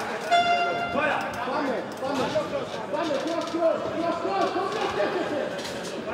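Several voices shouting over each other from ringside during a kickboxing bout. A short, steady high-pitched tone sounds for under a second near the start.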